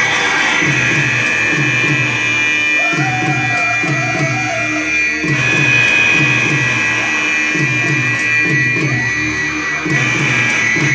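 Live band music played loud: a repeating low riff, about two notes a second, under a steady high drone, with a wavering higher line for a couple of seconds near the middle.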